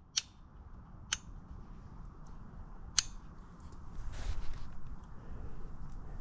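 Three sharp clicks, about one and then two seconds apart, from a hand working the switch of a cheap two-stage HVAC vacuum pump. The motor does not start: the pump has overheated and quit. A steady low rumble sits underneath.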